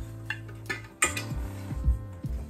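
Knocks and clinks of heavy gold-finish sculptures with marble bases being handled and set down, with a sharp clack about halfway through, over quiet background music.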